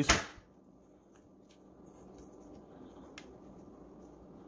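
A sharp knock at the very start, then quiet soft scraping and a few light ticks as a silicone spatula pushes a lump of cookie dough onto a metal baking sheet.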